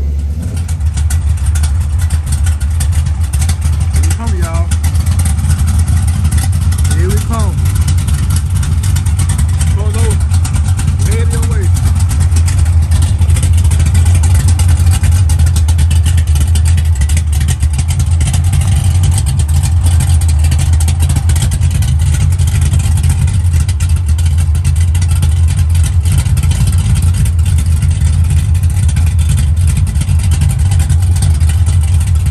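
Car engine running with a deep, steady exhaust rumble.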